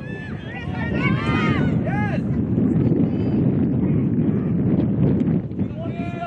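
Wind buffeting an outdoor microphone, a steady low rumble. Over it come distant shouted calls from voices on the field, several in the first two seconds, then mostly just the wind.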